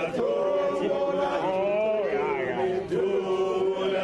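A crowd of men chanting a song together, several voices holding long notes that slide from one pitch to the next.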